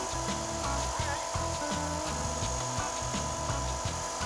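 Bridgeport vertical milling machine taking a facing cut across the top of a metal block held in a vise, with a steady whine from the cutter and spindle. Background music plays underneath.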